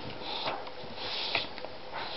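Golden retriever puppy sniffing and snuffling at a kitten's head while mouthing it in play: two breathy bursts, about half a second in and again a little past one second, with a few soft clicks.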